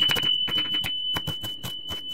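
Knife chopping an onion on a wooden cutting board: quick, even strikes, about five or six a second. A steady high-pitched beep-like tone starts at the same moment and holds on unchanged underneath.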